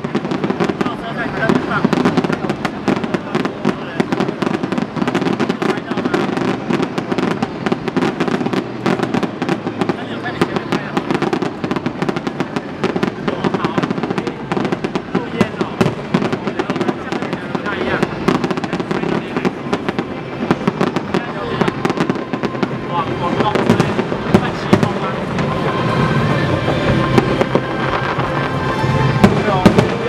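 Fireworks display: a dense, continuous string of bangs and crackles, with no let-up.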